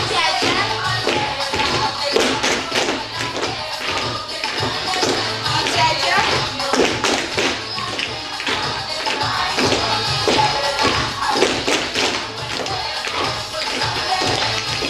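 Dance music playing over loudspeakers, with children's shoes tapping and stamping on a hard studio floor as a group dances.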